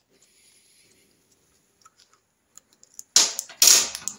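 A small open-ended spanner working a steel pillar bolt on the points plate: a few faint metal clicks, then a louder noisy metal clatter lasting under a second, about three seconds in.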